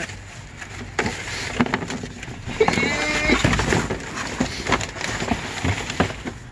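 Cardboard boxes and packaging being handled and shifted inside a metal dumpster: scattered knocks, scrapes and rustles throughout, with a brief vocal sound from one of the people about halfway through.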